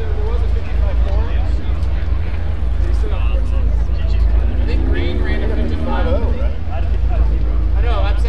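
Indistinct chatter of several people talking, over a steady low rumble.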